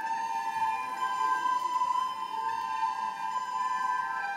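A children's ensemble of plastic soprano recorders playing together, holding one long, steady note.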